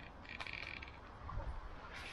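A short pulsed animal call of about half a second, high in pitch, a quarter of a second in, over a steady low rumble.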